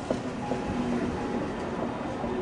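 Mont Blanc Express electric multiple unit running past close by: steady rolling and wheel noise on the rails with a faint steady whine, and a single sharp clack of a wheel over a rail joint just after the start.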